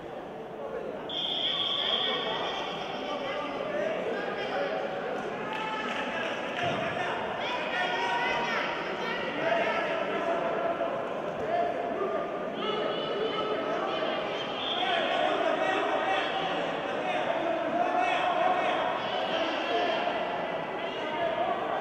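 Loud shouting voices of coaches and spectators echoing in a large sports hall during a wrestling bout, with a brief high whistle about a second in and a dull thud of bodies on the mat near the middle.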